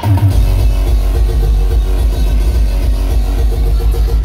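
Loud hardcore electronic dance music played over a big PA system and heard from within the crowd, with a heavy, distorted bass that cuts back in about a third of a second in and then pounds on without a break.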